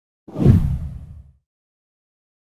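A single whoosh transition sound effect with a deep low rumble, swelling fast a quarter second in and fading away within about a second.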